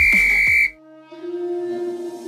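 A single steady, high whistle-like timer tone, under a second long, signalling the end of a Tabata work interval; the fast electronic workout music stops with it. After a brief lull, soft piano music starts for the rest break.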